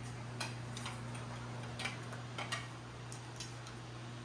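Light, irregular clicking footsteps on a tile floor, about seven short taps, over a steady low electrical hum.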